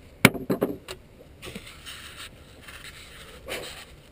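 A sharp click about a quarter second in and a few lighter clicks after it, then stretches of rustling and crunching, as of a hunter moving over dry crop stubble.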